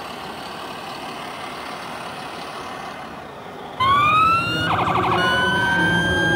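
Hall background noise, then about four seconds in an RC model fire truck's electronic siren switches on suddenly, sweeping up into a wail, with a brief rapid pulsing burst about a second later.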